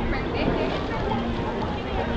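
Indistinct chatter of passengers on a riverboat deck, several voices overlapping over a steady low rumble.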